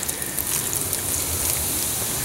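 Beer poured from a can in a thin, steady stream, splashing into an aluminium foil pan of vegetables on a grill.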